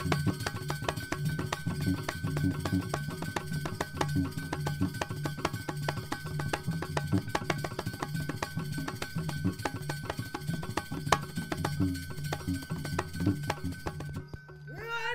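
Balinese gamelan playing dance accompaniment: fast, dense percussive strokes over sustained low pitched metallophone notes. It cuts off at the end.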